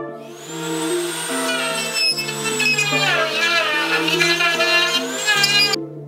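Handheld rotary carving tool with a burr grinding into cypress deadwood: a high whine that sags and rises in pitch as the burr bites, over background music, cutting off suddenly shortly before the end.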